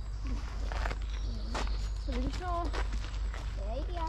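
Footsteps on a packed woodland path, with unclear voices of people nearby rising and falling through the middle and near the end, over a steady low rumble on the microphone.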